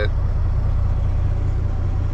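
Semi-truck's diesel engine idling while parked, a steady low hum heard inside the cab.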